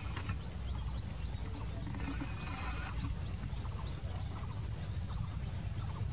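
Low steady rumble of an approaching diesel locomotive still far off, with birds chirping over it. Two short bursts of hiss come about two seconds in.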